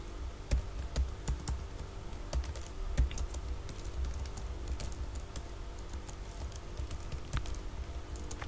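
Computer keyboard being typed on: irregular, quick key clicks as text is entered, over a low steady background hum.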